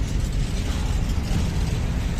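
Open freight wagons (gondolas) of a freight train rolling past on the rails: a steady, heavy rumble of wheels on track with continuous metallic clatter.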